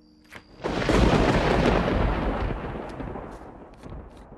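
A thunderclap: a sudden loud crack with a deep rumble that rolls off over a few seconds, followed by a few sharp cracks near the end.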